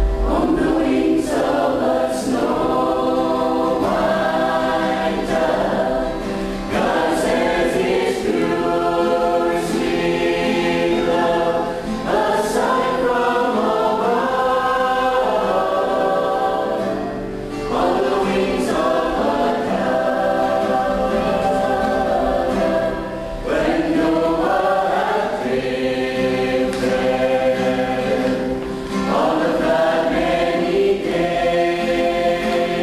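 Mixed choir of women's and men's voices singing a worship song in sustained phrases, with brief dips between phrases about every five or six seconds.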